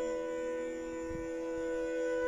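Bansuri (bamboo flute) holding one long, steady note over a steady drone, the melody having just settled from a run of moving notes.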